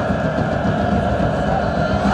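Large crowd of football supporters chanting together in a stadium, the massed voices loud and steady.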